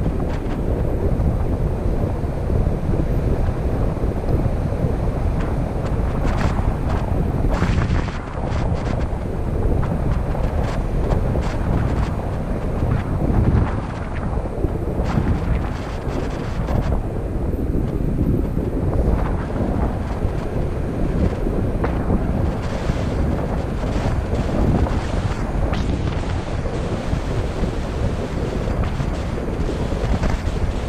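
Wind from a paraglider's flight buffeting a hand-held camera's microphone: a loud, low, uneven rush that swells and dips throughout.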